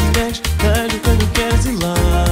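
An acoustic pop song played live: an acoustic guitar strummed in a steady rhythm under a male voice singing a melodic line without clear words.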